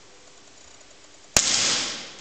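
A single pistol shot: one sharp crack about a second and a half in, with the hall's echo dying away over about half a second.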